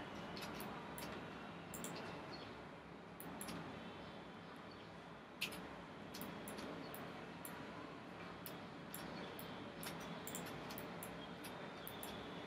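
Computer mouse clicking now and then, a series of short light clicks with a sharper one about five and a half seconds in, over a faint steady hiss.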